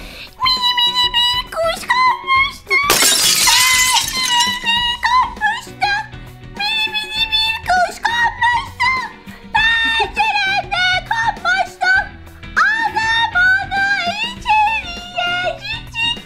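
A woman singing a children's song in a thinned, very high-pitched voice, melody notes held and sliding. About three seconds in, a glass-shattering sound effect cuts across the singing for a second or so.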